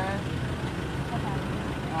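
Steady low rumble of an idling vehicle engine under a crowd's scattered voices.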